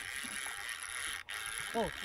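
Conventional lever-drag fishing reel being cranked, its gears running steadily as line is wound in on a hooked fish, with a brief drop-out a little over a second in. A voice says 'oh' near the end.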